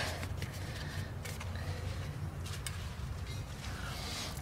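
Faint rustling and light clicks of a cardboard template being handled and repositioned, over a low steady hum.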